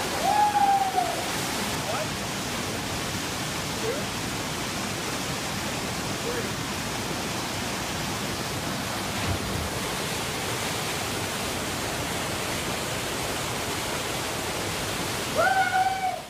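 Steady rush of a small waterfall plunging into a rock pool. Brief voices call out over it near the start and again near the end.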